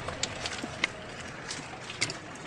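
Low rumble of a golf cart rolling, with three sharp clicks and knocks spread across the two seconds.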